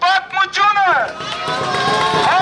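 A man shouting through a handheld megaphone, in a few loud phrases.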